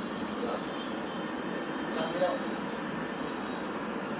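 Steady outdoor background noise like a distant city hum, with a single sharp click about two seconds in and a brief snatch of a voice just after.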